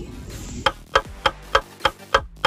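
Clock ticking sound effect: crisp, slightly ringing ticks at about three a second, starting a little over half a second in.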